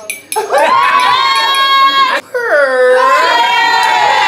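Dinner guests cheering with two long, high-pitched whoops. The first runs from about half a second in to about two seconds; the second dips in pitch and then rises and holds. A few claps come right at the start.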